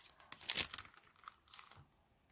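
Baking paper crinkling and rustling as it is handled and pulled back from a freshly baked loaf, in short irregular crackles, most of them in the first second.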